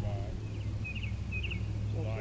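A songbird gives three short chirps about half a second apart over a steady low rumble.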